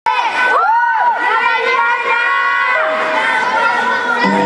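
Crowd of high young voices cheering and shouting, many calls overlapping and held as they rise and fall.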